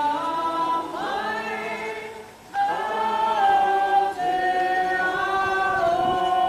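A group of voices singing together in long held notes that step from pitch to pitch, with a short break about two seconds in before they come back in strongly.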